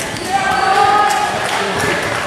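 Indistinct chatter of several voices echoing in a gymnasium, with one voice held longer in the middle, and basketballs bouncing on the court floor.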